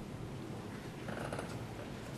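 Steady low rumble and hiss of room noise on an open courtroom microphone feed, with a faint soft rustle a little after one second in.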